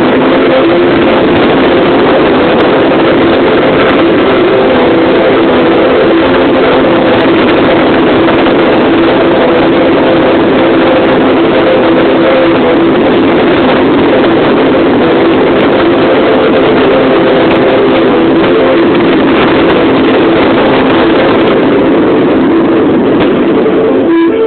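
Fireworks display heard as a continuous, distorted roar that overloads the microphone, with steady humming tones underneath. It holds at one level throughout and cuts off suddenly at the very end.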